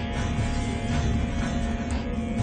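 Background music from a TV drama score: sustained tones over a low bass.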